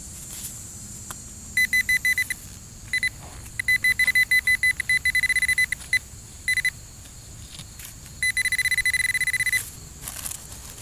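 Handheld metal-detecting pinpointer beeping at one fixed high pitch as it is probed around a dig hole. It gives runs of short beeps that get faster, merging into a near-continuous tone around the middle and again near the end, the sign that its tip is right at a buried metal target.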